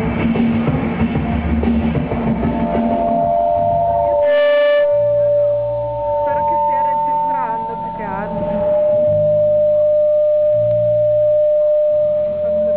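Live electronic-folk music from a laptop and an electric guitar. A dense, busy section breaks off about four seconds in, and long held tones follow over a bass that pulses on and off, with short gliding sounds weaving over them in the middle.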